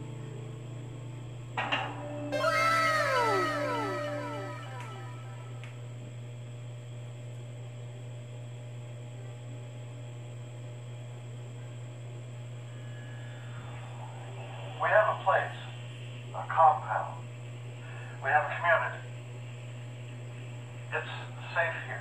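A film soundtrack playing through the TV's speakers as the movie begins: a steady low hum, a brief cluster of falling tones about two to four seconds in, then short, sparse bits of dialogue in the second half.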